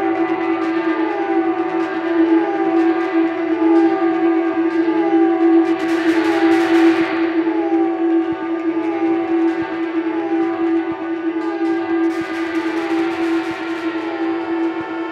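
Live lo-fi experimental rock performance: a loud sustained drone under a falling, siren-like pitch figure that repeats a little more than once a second. Hissy crashes of noise swell in about halfway through and again near the end.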